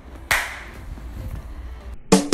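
One sharp crash-like hit about a third of a second in, fading out over about a second and a half, over a low steady hum. It sounds like an edited-in cymbal crash or transition effect.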